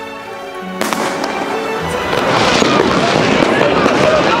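Fireworks going off: a sharp bang about a second in, then dense crackling and popping that grows louder toward the end, over background music that fades out at the bang.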